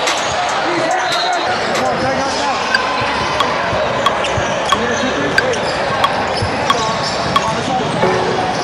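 Basketball bouncing on a hardwood gym floor in an even rhythm, about one and a half bounces a second, starting about three seconds in, over the chatter of many voices in the gym.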